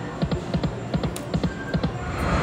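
Dancing Drums slot machine playing its electronic game music, with a quick run of short clicking notes as the reels spin and settle.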